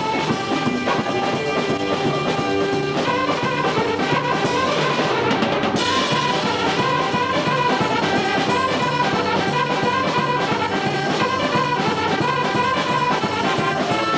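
Casio electronic keyboard played live through PA speakers: a melody of held notes over a steady built-in drum accompaniment.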